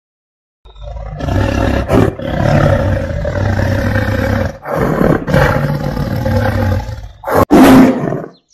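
A tiger roaring three times: a long roar beginning about half a second in, a second one after a short break in the middle, and a short roar near the end that is the loudest.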